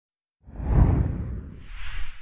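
Logo-intro whoosh sound effect: a deep, loud whoosh sweeps in about half a second in, followed near the end by a higher swish that fades away.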